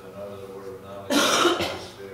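A person coughs loudly, a short harsh burst about a second in.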